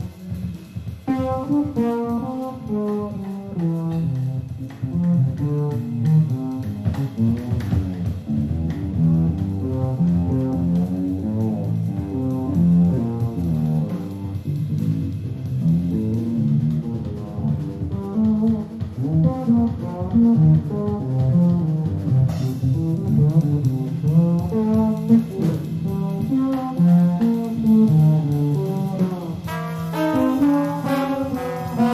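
Live big-band jazz, with a busy plucked bass line to the fore over the band.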